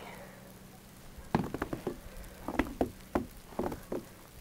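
Footsteps on fresh snow over a wooden deck: a run of irregular sharp crunches and knocks starting about a second in.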